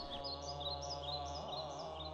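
Calm ambient background music held on a steady drone, with small birds chirping in quick short calls over it.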